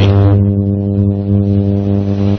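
A loud, steady low hum at one unchanging pitch, like electrical hum through a sound system.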